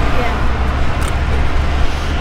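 Steady low rumble of a car engine running at idle.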